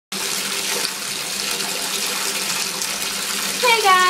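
Water running steadily from a bathtub tap into the tub as it fills. A voice begins near the end.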